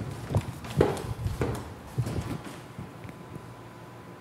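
Footsteps on a hard floor, several steps about half a second apart, growing fainter as the walker moves away.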